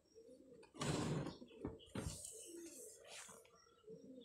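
Faint low cooing of a bird, with two brief bursts of rustling about one and two seconds in.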